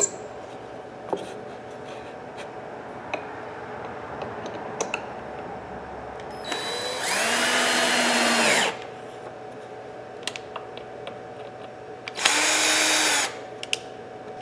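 A power drill runs twice, driving screws in the wooden clamping board that holds the slab on the CNC bed. The first run lasts about two seconds and the second about one, each rising in pitch as the trigger is squeezed, holding, then winding down. A few light knocks of handling come between them.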